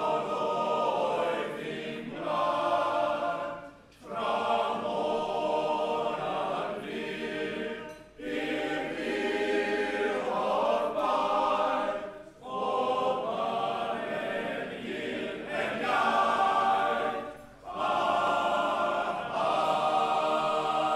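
Men's choir singing unaccompanied in full harmony, in phrases of about four seconds each, with a brief pause for breath between phrases.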